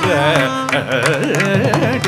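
Carnatic classical music: a male voice sings an ornamented line with sliding, oscillating notes, over a steady tanpura drone. Mridangam strokes run crisply and often underneath.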